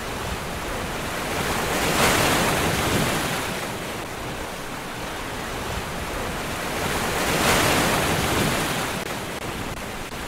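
Ocean surf: a steady rush of wave noise that swells twice, about two seconds in and again at about seven and a half seconds, as waves wash in.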